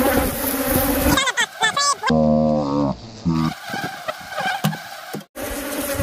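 Dense buzzing of a swarm of Africanized ('killer') honeybees flying close around the microphone, a stirred-up, defensive colony. About a second in, the buzzing gives way to a man's wordless voice and a quieter stretch with small knocks. The buzzing comes back after an abrupt cut near the end.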